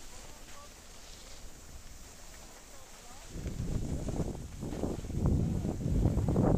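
Wind buffeting the camera microphone as the filmer skis downhill. It is a rough, uneven rumble that starts about three seconds in and grows louder.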